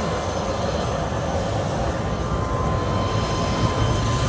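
Steady low rumbling noise with a faint, steady high tone above it, like engine or traffic din.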